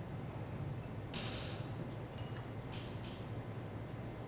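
Quiet room with a steady low hum, broken by three short rustles of paper and pens as people write on and handle index cards; the first and longest comes about a second in.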